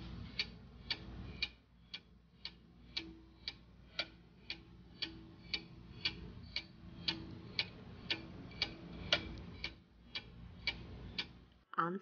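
Clock-ticking sound effect marking a countdown timer, sharp even ticks about two a second over a faint low hum. The ticking stops just before the end.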